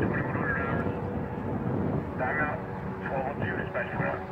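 Children shouting and calling out in a public park, over wind noise on the microphone and a faint steady hum.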